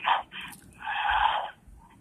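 A short, breathy exhale of a person, heard thin through a telephone line, about a second in.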